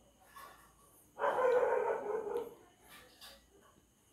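A dog barking, one burst starting a little over a second in and lasting about a second, followed by a few fainter short sounds.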